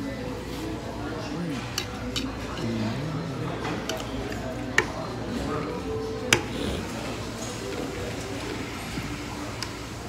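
Metal forks clinking against ceramic plates in a few short sharp taps, the two loudest about a second and a half apart near the middle, over a background of restaurant chatter.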